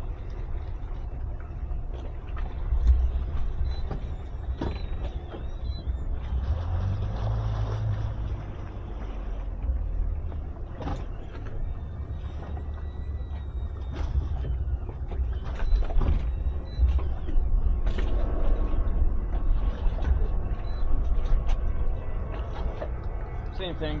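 Twin Suzuki outboard motors running at low speed under a steady low rumble, the engine note rising briefly about seven seconds in, with a few sharp knocks along the way.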